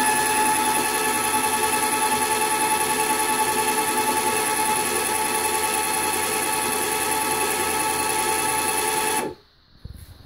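Electric motor of an EZ Noselift nose gear actuator running with a steady whine as it drives the nose gear up. It cuts off suddenly about nine seconds in.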